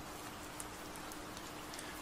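A faint, steady hiss spread evenly from low to high pitch, with a faint steady hum under it.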